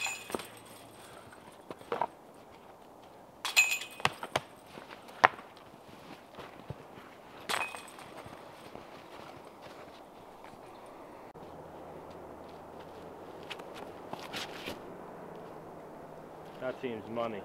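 Footsteps in deep wet snow with a handful of scattered sharp clicks and knocks, a few seconds apart, over a low steady background.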